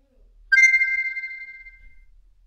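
A single bright electronic chime from a phone, struck sharply about half a second in and ringing out, fading over about a second and a half.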